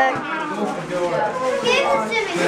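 Lively chatter of children and adults talking and exclaiming over one another during present opening, with no one voice standing out as clear words.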